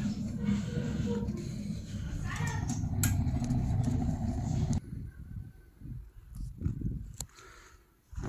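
Pellet rocket stove burning with a steady low rumble of fire and draft, which drops away abruptly about five seconds in, leaving only faint low thumps.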